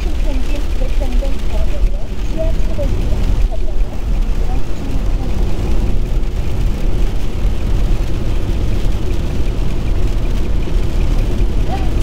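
Steady road noise inside a Kia Soul's cabin at highway speed on a rain-soaked road: a deep rumble with tyre hiss from the wet pavement.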